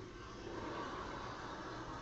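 Pot of water heating on a stove, a steady hiss.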